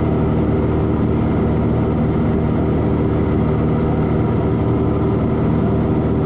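Cessna 182's six-cylinder piston engine and propeller droning steadily in flight, heard from inside the cabin.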